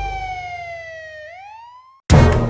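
Cartoon police siren sound effect fading out: one tone glides slowly down, then swings back up near the end. The last of the song's bass dies away in the first half second.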